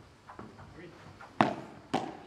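Two sharp padel ball impacts during a rally, about half a second apart in the second half, over a faint murmur of voices.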